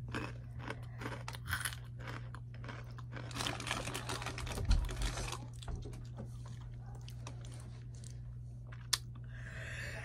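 Chewing and crunching of Takis rolled tortilla chips: a run of short crackly crunches and mouth clicks, densest about three to five seconds in.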